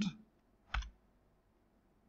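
A single short click, a little under a second in.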